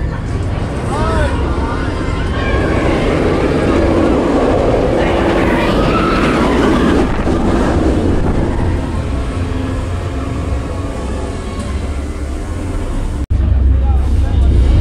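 Nemesis Reborn inverted steel roller coaster train running past on its track: a rumble that swells about two seconds in, peaks, and fades after about seven seconds, with riders' screams rising and falling over it.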